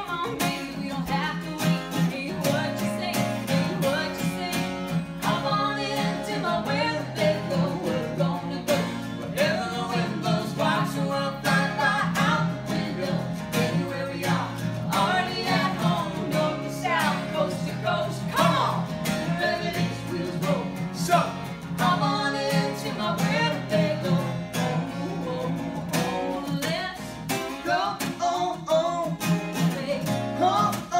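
A woman singing a country song live, accompanied by a single strummed acoustic guitar.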